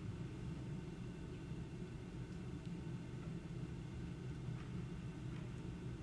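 Room tone: a steady low hum with faint background hiss.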